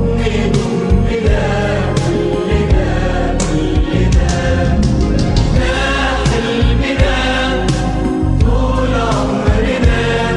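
Arabic pop anthem chorus sung by a group of male and female voices in unison, over full orchestral backing with a steady beat and heavy bass.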